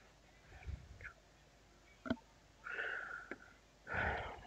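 Quiet handling of small plastic miniature parts on a cutting mat: a few light clicks and a soft knock, with a short breath about three seconds in.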